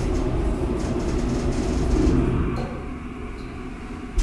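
DEVE hydraulic freight elevator car running with a steady rumble and hum, then slowing and coming to a stop about two and a half seconds in.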